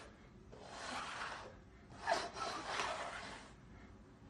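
Small upturned cups being slid and shuffled across a hardwood floor, two stretches of soft scraping, the first about half a second in and the second from about two seconds in until near the end.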